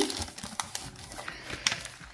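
Clear plastic packaging being handled: a few light clicks and rustling as a plastic case of nail drill bits and a zip bag of bits are moved about.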